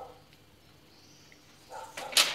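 Near silence: quiet room tone with a couple of faint small ticks, and a short vocal sound just before the end.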